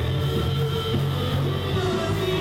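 Live rock band playing through amplifiers: electric guitar and bass guitar with a singer's voice, steady and continuous.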